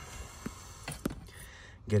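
A few faint, short clicks of hands handling plastic dashboard trim and a speaker, over a steady low hiss.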